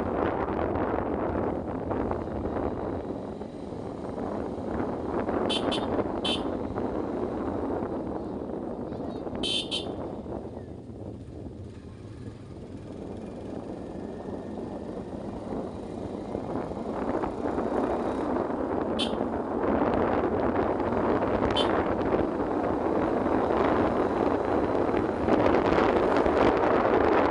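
Motorcycle riding along a road, engine and wind noise, easing off around the middle and building up again toward the end. Several short, high-pitched toots cut through: a quick cluster a few seconds in, a pair near ten seconds, and single ones later.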